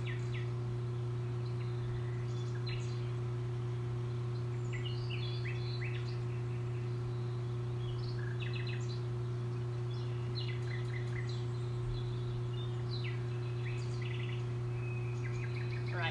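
Birds chirping and calling on and off over a steady low hum.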